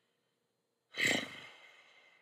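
A man sighing once in exasperation, about a second in: a short voiced start that trails off into breath and fades over about a second.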